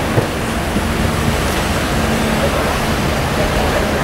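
Steady street noise with a faint low engine hum from an idling car, under a constant rumble of wind on the microphone.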